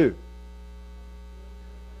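Steady electrical mains hum with a faint buzz of thin tones above it, from the recording or sound-system chain, heard in a pause in speech.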